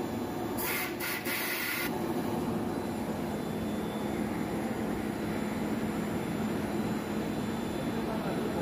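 Plastic film blowing machine running with a steady machine hum. Just after the start, a hiss comes in a few short spurts for just over a second.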